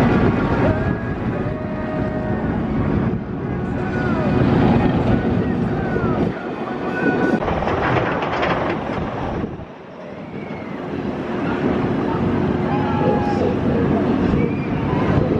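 Bolliger & Mabillard stand-up roller coaster train running on its steel track, a loud rushing rumble, with short voice-like cries over it. The rumble drops briefly about ten seconds in, then builds again as a train comes along the track.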